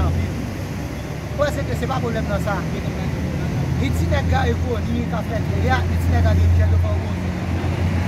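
Men's voices talking in a street crowd over a steady low traffic rumble that swells briefly near the end.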